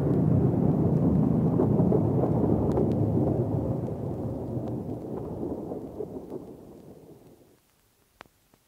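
The final crash of a thrash metal song ringing out: a distorted chord and cymbals decaying steadily and fading to silence about seven and a half seconds in.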